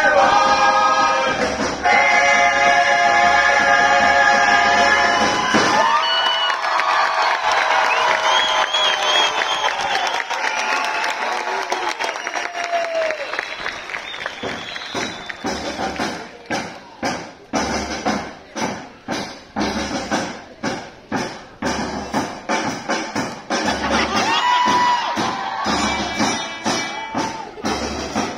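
A murga chorus of young voices holds a sung chord that breaks off about six seconds in. Audience cheering and applause follow, and from about fourteen seconds a steady percussion beat of sharp strikes, about two a second, starts up.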